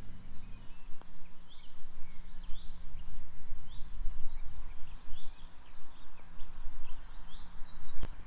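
Small birds chirping in short, scattered calls over a low, uneven rumble.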